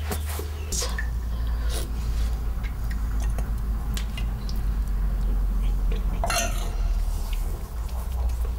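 Metal spoon clinking and scraping against an enamel pot as someone eats from it, a few scattered clinks with a longer scrape about six seconds in, over a steady low hum.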